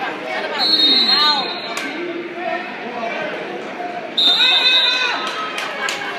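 Spectators' voices shouting and chattering, echoing in a large gym during a wrestling bout. A high steady tone cuts in briefly twice, the second time about four seconds in.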